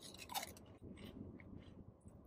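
Chips being bitten and chewed: a few faint, separate crunches.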